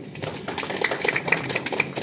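A small crowd clapping, an irregular patter of handclaps that keeps up evenly.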